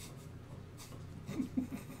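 Quiet room with a faint rustle, then from about halfway a man's held-back laughter in short chuckles.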